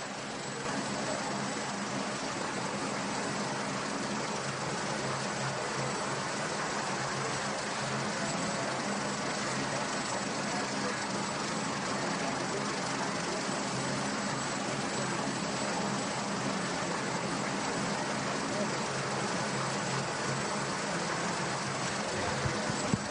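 Steady helicopter engine and rotor noise on an aerial camera's live feed: an even rushing with a constant low hum and no breaks.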